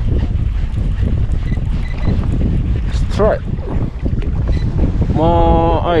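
Wind buffeting the microphone in a steady low rumble on open sea. A short vocal sound cuts in about three seconds in, and a held voiced call near the end.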